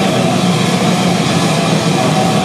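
Punk/hardcore band playing live: distorted electric guitars, bass and drum kit in a dense, steady wall of sound.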